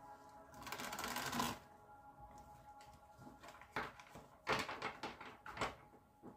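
A deck of tarot cards being handled: a dense papery shuffle for about a second near the start, then several sharp taps and slaps of cards laid down on the table. Faint background music runs underneath.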